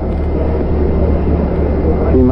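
A steady, loud low rumble with a dense hiss over it, in a video's soundtrack just before an archival launch-countdown commentary begins.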